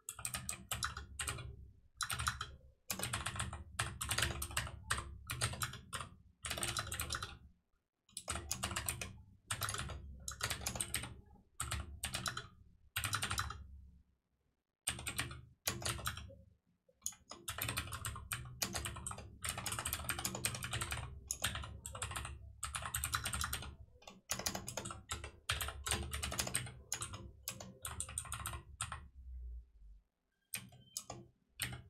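Computer keyboard being typed on in quick runs of keystrokes, broken by short pauses of a second or less.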